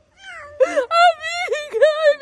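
A woman's high-pitched, drawn-out crying and wailing of joy: several cries in a row, starting just after a brief hush.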